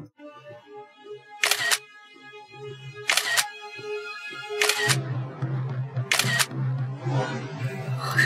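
Phone camera shutter clicking four times, evenly about a second and a half apart, as photos are taken. Soft background music runs underneath, and a low sustained note comes in about five seconds in.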